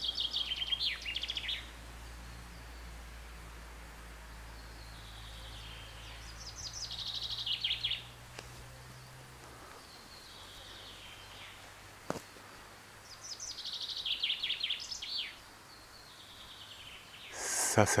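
A songbird singing the same short phrase again and again, about five times, each a run of notes falling in pitch that ends in a quick trill. There is a single sharp click about twelve seconds in.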